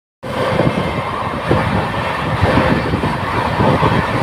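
Express passenger train running at speed, heard from the open door or window of a moving coach: a loud, steady rumble of wheels on track with gusty wind on the microphone.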